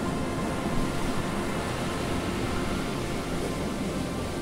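Surf: waves breaking and washing up onto a sand beach, a steady rushing noise with no distinct crashes.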